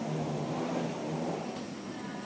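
Steady low rumble of aircraft and ground equipment on the airport apron, heard muffled through the glass of a boarding jet bridge.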